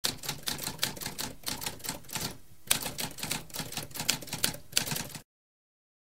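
Typewriter typing: a quick run of key strikes, a short pause about two and a half seconds in, then more typing that stops abruptly a little past five seconds.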